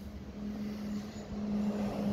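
Steady low mechanical hum with a constant droning tone, a faint hiss growing slightly louder in the second half.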